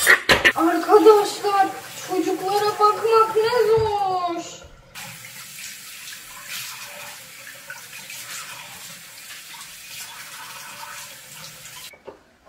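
A bathroom sink tap running steadily, water splashing into the basin as hands are washed under it. For the first four seconds or so a girl's voice sounds over the water.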